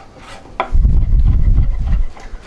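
Kitchen knife chopping mushrooms on a cutting board, with a heavy low thudding from about half a second in to near the end.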